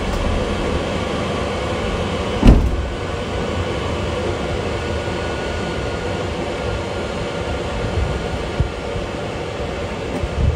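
Eberspächer diesel heater running, its fan blowing steadily through the floor vent with a steady hum. A single loud thump comes about two and a half seconds in.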